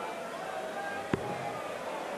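Low murmur of a darts-hall crowd, with a single sharp thud about a second in: a steel-tip dart striking the dartboard.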